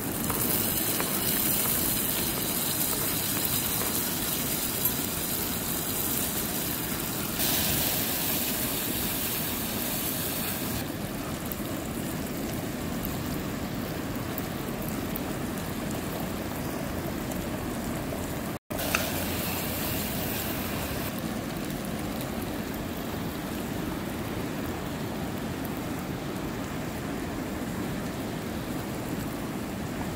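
Steady rushing of a river. A brighter hiss sits on top for roughly the first ten seconds, and the sound cuts out for an instant about two-thirds of the way through.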